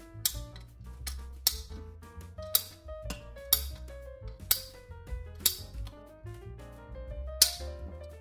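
PVC pipe cutter clicking sharply about seven times, roughly once a second, as it is squeezed through the rubber neck of a sink plunger, over background music.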